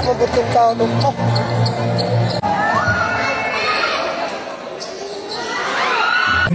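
Basketball bouncing on an indoor hardwood court, with sneakers squeaking in short rising chirps in the second half and voices in a large, echoing hall.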